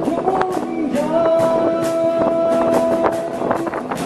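Live acoustic busking band: a male voice holds one long sung note over strummed acoustic guitar, with steady cajon strikes keeping the beat.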